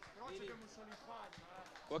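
Background speech only: faint voices of people talking nearby, with no other clear sound.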